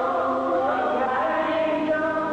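Female gospel vocal group singing live, holding long notes in close harmony. The notes shift in pitch about halfway through.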